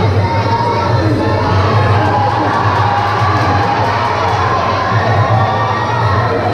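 Crowd of spectators shouting and cheering continuously, many voices at once, over a steady low hum.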